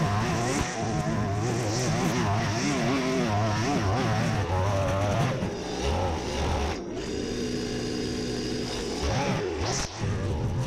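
Petrol string trimmer (whipper snipper) running at high revs while cutting thick grass, its engine note rising and falling. About seven seconds in it drops to a lower, steady note for a couple of seconds, then revs up again near the end.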